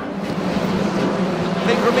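Touring car engines running at racing speed, a steady drone under the race broadcast.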